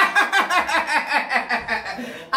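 A man laughing heartily in a rapid run of short bursts, about five a second, that tails off toward the end.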